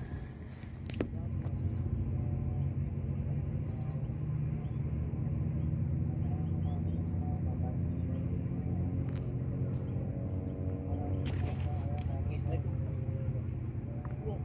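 A boat's diesel engine running steadily as a low, even rumble that comes up about a second in.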